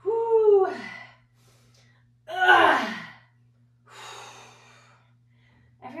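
A woman's voiced exhales of effort during a weighted squat: two sighs falling in pitch, the second louder, about two and a half seconds in, then a quieter breathy exhale about four seconds in.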